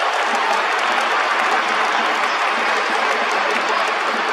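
Large baseball stadium crowd clapping and cheering, a steady dense wash of applause with no breaks.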